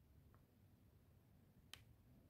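Near silence: room tone, with one short faint click near the end as small handling noise while hand-sewing.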